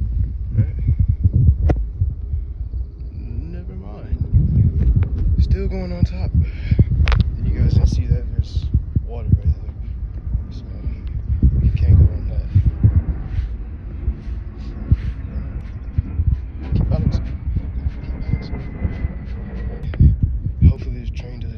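Irregular thumps, knocks and scuffs of footsteps and handling on a steel railroad hopper car loaded with rock, picked up close on a handheld phone's microphone.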